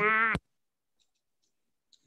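A voice breaks off abruptly with a sharp click about a third of a second in, then dead digital silence: the call audio cutting out.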